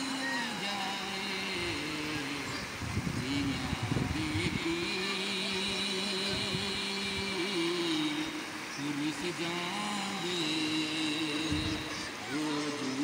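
A man singing unaccompanied into a handheld microphone, long drawn-out notes that step up and down in pitch, over the steady rush of a river.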